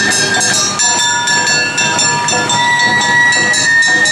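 Awa odori festival band playing: long held bamboo-flute notes over a fast, steady clanging of metal kane gongs and drum beats.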